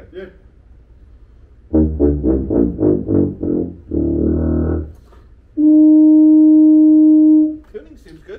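Tuba played in a quick run of about eight short notes, then a note of about a second, then one long steady high note held for about two seconds, the loudest part.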